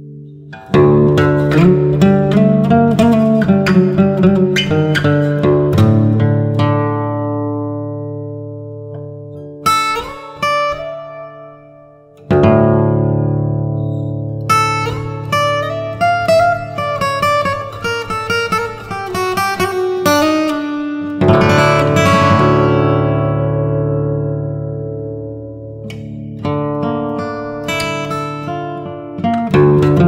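Steel-string Yamaha acoustic guitar in drop D tuning played fingerstyle: short melodic phrases of sliding notes over a ringing open low string, each phrase left to ring and fade before the next begins.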